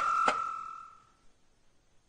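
A single steady high-pitched tone, like a beep or chime, with a click about a quarter second in, fading away within the first second, followed by near silence.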